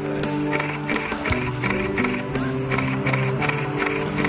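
Background music: a song soundtrack with held chords and a steady beat, no vocals in this stretch.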